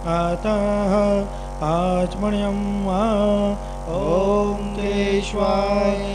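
A voice chanting a Hindu devotional mantra in sung, ornamented phrases with pitch glides, a short pause between each phrase, over a steady held drone.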